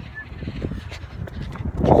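Wind buffeting the phone's microphone, an uneven low rumble, with a voice starting right at the end.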